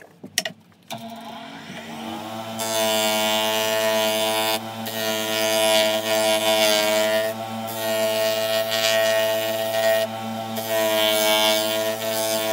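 Benchtop disc sander: a few clicks, then its motor comes up to speed about a second in and settles into a steady hum. From about two and a half seconds a wooden batten is held against the sanding disc, adding a loud gritty rasp that breaks off briefly three times as the wood is lifted and pressed again.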